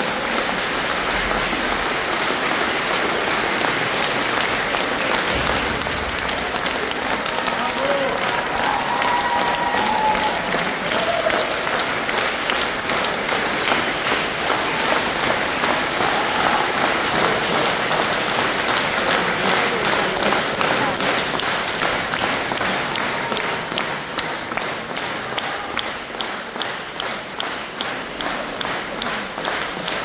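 Concert-hall audience applauding after the piece, with a few voices calling out in the first ten seconds or so. In the second half the clapping falls into a regular rhythm, the audience clapping in unison.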